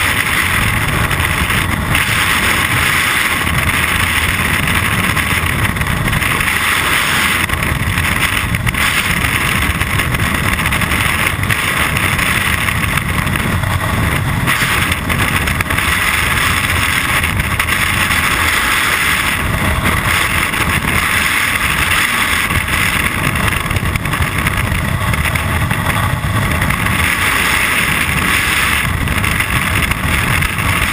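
Freefall airflow rushing over a jumper's helmet-mounted camera: a loud, steady rush of wind noise with a low rumble, unbroken throughout.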